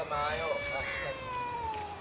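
A long, drawn-out, meow-like voiced call whose pitch slides slowly downward over about a second and a half.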